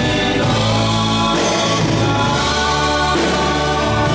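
A woman and a man singing a worship song together through microphones, with a band accompanying them on guitar. Long held notes run over a steady bass line.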